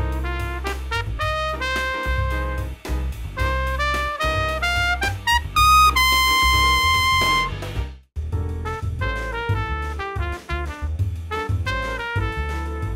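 Trumpet playing a fast jazz lead phrase over a dominant seventh chord with a backing track beneath it, climbing to a long held high note about six seconds in. After a short break near eight seconds, a new phrase starts over a new backing track.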